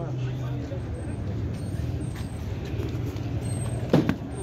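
Street background noise: a steady low engine hum under faint, indistinct voices.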